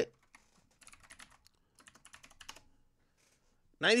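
Typing on a computer keyboard: two short, faint runs of keystrokes, about a second in and again around two seconds in, as a price is looked up.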